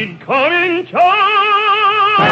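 Operatic baritone singing with strong vibrato: short sung phrases, then a long high note held from about a second in.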